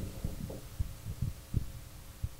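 Low room hum in a lecture room, with a few soft, low thumps.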